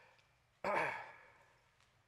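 A man's short sigh, a voiced breath out that falls in pitch, a little over half a second in.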